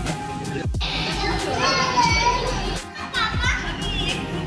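Young children's high-pitched voices calling out twice, about one and a half seconds in and again just after three seconds, over background music with a steady beat.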